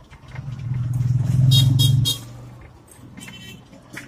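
A motor vehicle's engine passing by, swelling to a loud hum about a second in and dropping away just after two seconds, with three brief high-pitched bursts near its loudest point.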